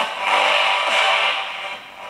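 Soundtrack of a played-back video edit, loud and dense with music, turned down in volume about halfway through.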